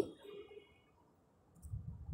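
A block of cheese being grated on a flat metal hand grater, with faint scraping strokes starting near the end.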